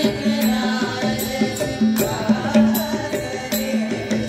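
Group of voices singing a devotional song together, with a two-headed hand drum keeping a steady rhythm of strokes and a repeated deep drum tone under the singing.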